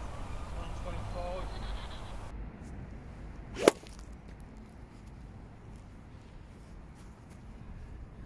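Golf swing with a 43-degree Callaway Apex pitching wedge: a short swish building into one sharp strike as the clubface hits the ball off a hitting mat, about three and a half seconds in.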